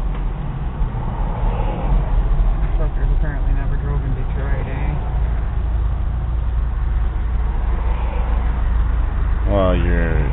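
Steady low engine and road rumble inside a moving vehicle's cabin, with faint voices in the middle and a person starting to talk near the end.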